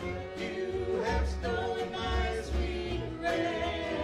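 A live acoustic band playing a song: voices singing over acoustic guitar, fiddle and upright bass.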